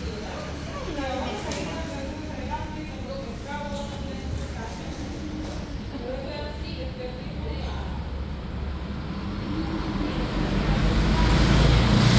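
Faint talking over a steady low rumble of road traffic. Near the end a vehicle grows louder as it passes on the street.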